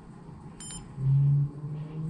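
A short high beep from the coating thickness gauge as a button is pressed, about half a second in. Then, louder, a low hummed "mm" from a man's voice, held twice.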